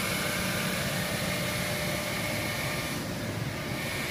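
Eldorado gun drilling machine running, its electric motors giving a steady mechanical hum with a few constant whining tones.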